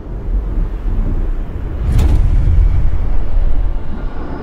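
A deep cinematic sound-design rumble swelling in loudness, with a sharp click about two seconds in.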